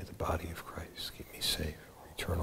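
A priest quietly saying a short prayer in a low voice, too soft for the words to be made out.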